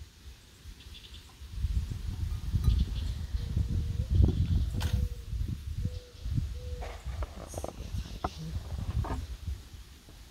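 Low rumbling handling noise with a few knocks as a stemmed wine glass is worked into a crocheted cotton holder and set down on a wooden table. Four short faint tones come in the middle of it.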